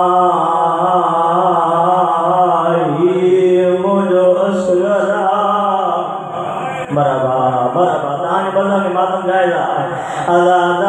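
A man's amplified voice chanting a Muharram lament recitation in long, wavering, drawn-out melodic phrases, softening briefly a little past halfway.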